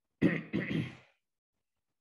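A man clearing his throat in two quick bursts within the first second.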